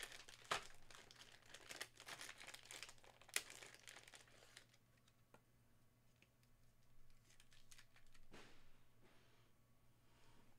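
Faint crinkling of a thin plastic card sleeve as a trading card is slid into it and handled with a rigid plastic top loader, with a few sharp clicks. The crinkling is densest in the first four or five seconds, then thins out, with one soft swish about eight seconds in.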